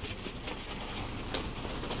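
Faint rustling and crinkling of a plastic mailer bag as a small dog noses and digs into it, with a few soft crackles.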